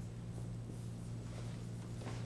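Marker pen writing out a word on a large writing board, with soft faint strokes, over a steady low electrical hum.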